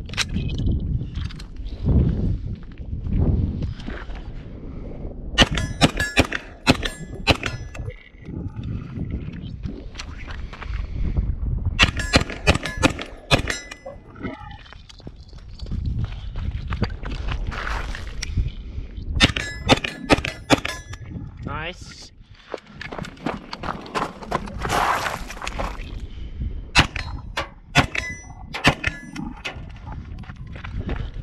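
H&K SP5 fired in quick strings of shots, four strings in all, each shot followed by a metallic ring.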